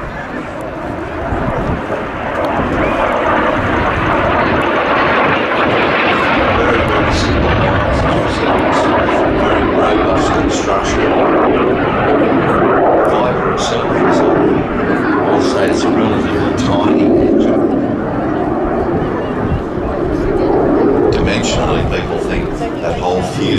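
BAC Jet Provost T.3A jet trainer flying its display, its Viper turbojet growing loud about two seconds in and staying loud as it passes.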